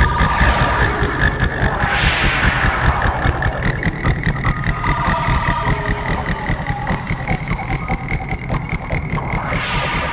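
Goa trance with a pulsing electronic kick drum at about 148 beats a minute under synth lines. Swelling sweeps of synth noise about two seconds in and again near the end, and the level slowly falls as the track winds down.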